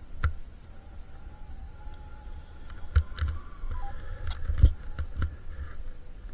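Two-way radio giving off faint steady electronic tones with a short stepped beep about two-thirds of the way in, while several dull thumps come through, the loudest about three-quarters of the way in.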